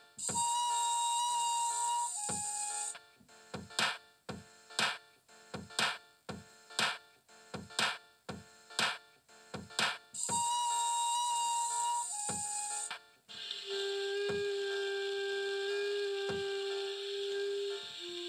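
Electronic music: sparse, regular drum-machine hits with long held synthesizer notes. A high held note steps down in pitch, returns after a stretch of beats alone, and gives way near the end to a lower held note over the beat.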